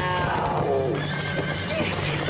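A horse whinnies in one long call that falls in pitch through the first second. Dramatic orchestral music and hoofbeats play under it.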